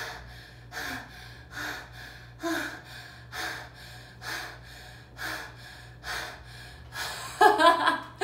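A woman breathing in and out through an open mouth, shallow and fast, about one audible breath a second: the Alba Emoting breathing pattern for erotic love. Near the end her voice joins in with short, louder sliding sounds.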